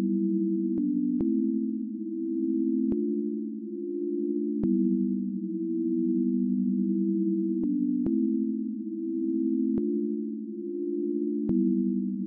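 A soft, sine-like synth pad preset ("FIRE PADS") in FL Studio's 3x Osc plays sustained low chords. The chord changes every one and a half to three seconds, and each change starts with a sharp click.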